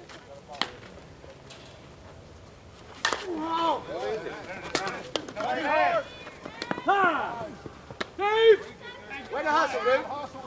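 A sharp crack of a slowpitch softball bat meeting the ball. From about three seconds in, several players shout and yell loudly as the ball is in play.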